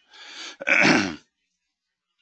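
A man coughing to clear his throat: a short breathy rasp, then a louder voiced clearing, about a second in all.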